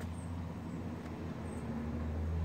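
A steady low mechanical drone, growing slightly louder toward the end.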